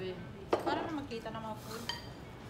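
Spoons and chopsticks clinking against bowls and dishes at a dining table, with a sharp clink about half a second in and another near the end, among brief voices.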